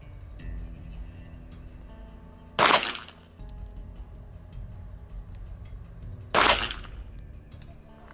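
Two shots from a 9mm Walther PDP pistol, a little under four seconds apart, each a sharp crack with a short tail.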